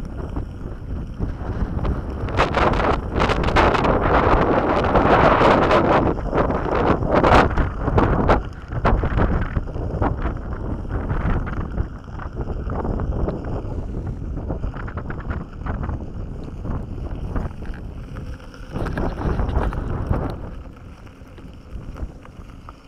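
Wind buffeting the microphone over the crunch and knocks of an electric unicycle's tyre rolling on a loose gravel track. It is loudest and most jolting in the first half.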